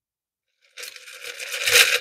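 Shaken cocktail poured from a metal shaker tin through a strainer into a glass: a splashing pour that starts a moment in and swells louder, carrying ice chips through with the liquid.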